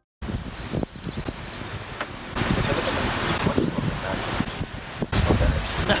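Wind buffeting the microphone outdoors: an irregular rushing rumble that grows louder in gusts, about two seconds in and again near the end.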